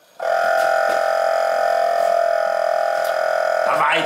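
Secop (Danfoss) BD35 refrigeration compressor starting up on 230 V mains after its start delay, cutting in suddenly about a quarter second in and then running with a loud, steady electric hum at its starting speed of about 2000 rpm.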